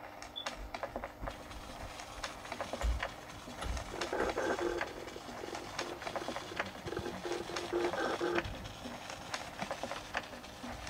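Rapid, irregular mechanical clicking, like a small machine or keys working. Two stretches of buzzing whir come in about four seconds in and again about seven seconds in, and a couple of low thumps fall near three seconds.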